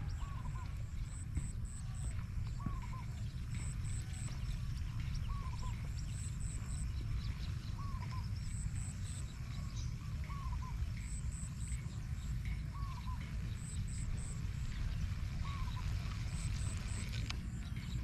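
Small animal calls repeating at an even pace over a low wind rumble on the microphone: a short low chirp about every two and a half seconds and a quick three-note high chirp at about the same rate.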